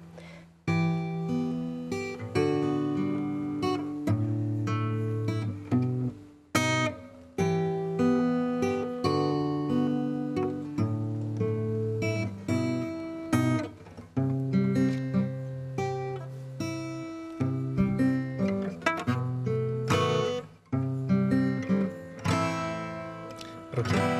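Two acoustic guitars played together, plucking a melody over bass notes in phrases, with short breaks about six, thirteen and twenty seconds in.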